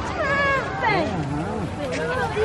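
Indistinct chatter of several overlapping voices, one of them high and gliding up and down in pitch.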